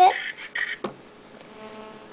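Fring's incoming-call ringtone on an iPod touch, an electronic ring that cuts off within the first second as the call is accepted, with a click just after. A faint steady hum follows on the connected call.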